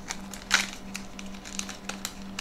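Crinkling of a foil anti-static bag holding a stepper driver board as it is handled and pulled open, with a sharper crackle about half a second in.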